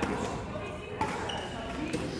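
Badminton racket hitting a shuttlecock: two sharp hits about a second apart, in a large sports hall, over faint voices.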